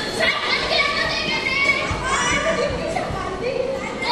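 Children's voices speaking and calling out as they act in a stage skit.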